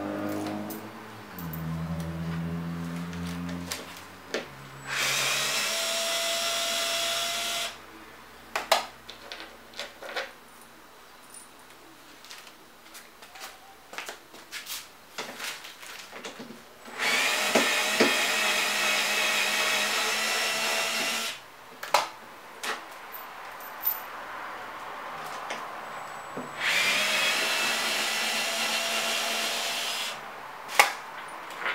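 A small cordless power screwdriver whirring in three runs of about three to four seconds each as it backs out the bolts that hold a fiberglass rear wing's base piece. Clicks and light knocks from handling the parts come between the runs.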